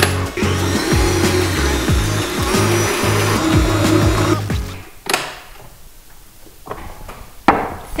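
Stand mixer running, its beater creaming eggs and sugar in a stainless steel bowl, under background music with a steady beat. The music stops about five seconds in, leaving a quieter stretch broken by two sharp knocks.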